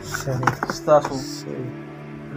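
Cardboard shoe boxes knocking and scraping as they are handled, with a few sharp knocks in the first second. A short snatch of voice comes about a second in, over steady background music.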